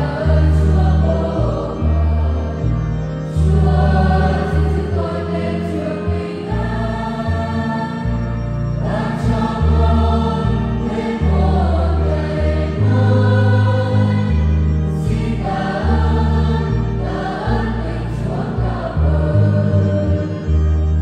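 Children's and youth church choir singing a Vietnamese hymn of thanksgiving in several voices, over an accompaniment with a deep bass line that changes note every second or two.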